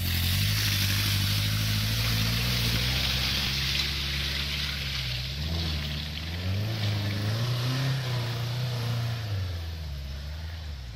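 Open trials car's engine pulling hard up a muddy section, its revs dipping about five and a half seconds in, rising again, then fading near the end as the car climbs away.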